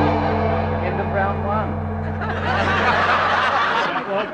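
A low musical note held steadily for nearly four seconds, stopping just before the end, under a studio audience's laughter and chatter that swells in the second half.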